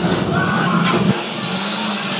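Loud low engine-like rumble from a sound effect over loudspeakers, with a sharp click just under a second in, then a steadier low hum.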